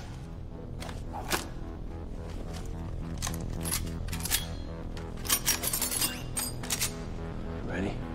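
Film score with a steady low drone under it, crossed by sharp clicks and knocks. The first comes right at the start as a Lawgiver pistol is reloaded from a belt pouch, and a quick cluster of them follows around the middle.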